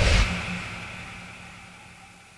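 A low rumble that opens with a short swish and fades steadily away, over a faint steady hum.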